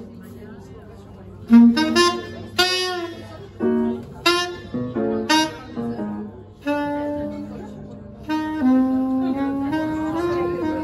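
Live jazz trumpet solo over double bass: after a soft start, the trumpet breaks in with short, loud stabbing phrases, then settles into longer held notes near the end.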